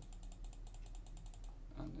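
Rapid, even run of small clicks at a computer, about ten a second, as slices are stepped through in the brain-imaging software; it stops about one and a half seconds in.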